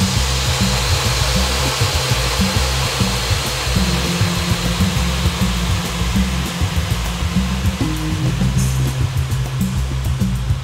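A desktop vacuum-forming machine's vacuum running with a steady rushing noise, drawing the heated plastic sheet down over a 3D-printed model to form a mould. Background music with a low bass line plays underneath.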